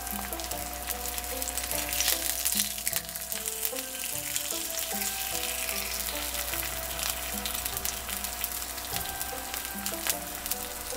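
A thin slice of beef coated in rice flour sizzling and crackling steadily in hot oil in a nonstick frying pan, with a burst of louder crackles about two seconds in.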